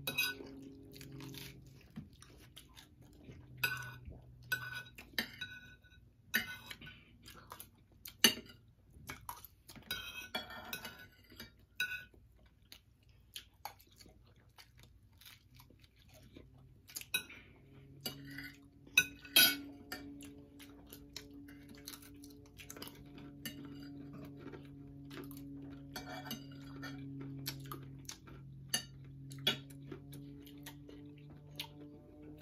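Metal forks and spoons clicking and scraping on ceramic plates, with chewing between the clicks, over a faint steady low hum.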